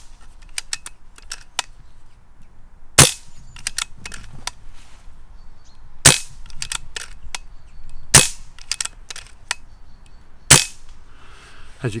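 Brocock (BRK) Ghost Carbine multi-shot PCP air rifle fired four times, about two to three seconds apart. After each shot come several quick smaller clicks as the side lever is cycled to chamber the next pellet from the magnetic magazine.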